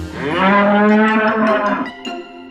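A loud bull-like bellow, the roar sound effect of Frank the combine harvester, rising in pitch over the first half-second and held for about a second and a half before it stops.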